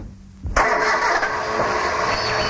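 Sound effects opening a car-radio advert: a thump at the start, then about half a second in a car engine starts and runs with a steady, hissy sound.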